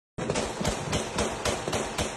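A dense, uneven string of sharp bangs, several a second, over a constant crackle: New Year's Eve firecrackers and celebratory gunfire going off together.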